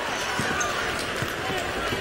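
Basketball hall during play: a ball bouncing on the court amid a background of voices, with a few short knocks.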